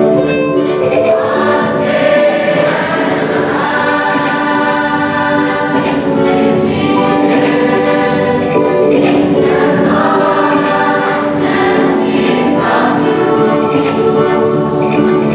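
A large mixed choir of graduating students singing a slow song together over a steady rhythmic accompaniment.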